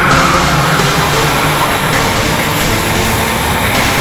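A pack of racing karts' two-stroke engines buzzing together as they run through a corner, with background music faintly underneath.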